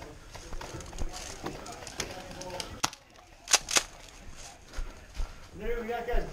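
Footsteps on leaf-strewn ground and light knocks of gear as a player moves, with two sharp cracks a moment apart about three and a half seconds in. A voice starts near the end.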